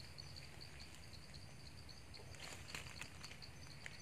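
Faint insect chirping, a high note pulsing evenly about six times a second, over a low background rumble, with a few soft clicks.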